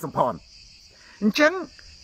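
Steady high-pitched insect chorus, heard between and under two short phrases of a man's speech.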